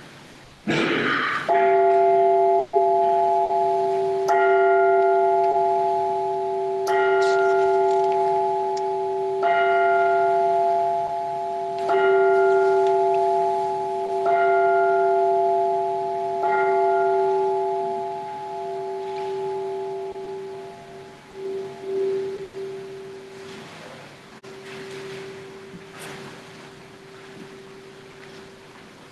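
A bell struck seven times at an even pace, about one stroke every two and a half seconds, each stroke ringing on the same tone and running into the next. After the last stroke the ringing dies away over several seconds. A short noise comes just before the first stroke.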